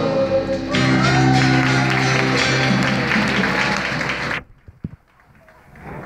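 Live band music, guitar over drums, with clapping mixed in. It stops abruptly about four seconds in, leaving the room quiet.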